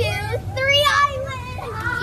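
Young girls' voices laughing playfully, high-pitched, in several short runs, over a steady low hum.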